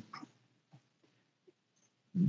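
Near silence: a pause in a man's speech, with only a few faint, brief sounds.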